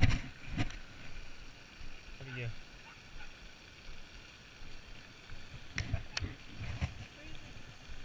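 Scattered sharp clicks and knocks of handling noise from the angler's rod and reel gear against the chest-worn camera, the loudest right at the start and another just after, then a few more about six seconds in, over a light wash of wind noise.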